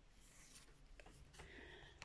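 Near silence, with faint rustling and scraping of a tarot card being drawn and slid onto the table, once briefly about half a second in and again in the second half.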